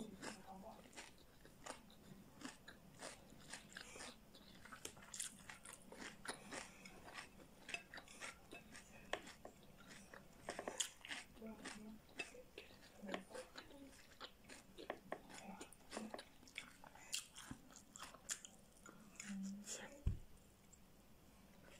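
Quiet close-up chewing of crisp raw vegetables, red bell pepper among them: a steady run of soft, irregular crunches, with a few short closed-mouth hums.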